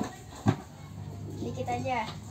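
A short click, then a single sharp knock about half a second in, from hands and a pencil at a small desk. A child's voice comes in faintly near the end.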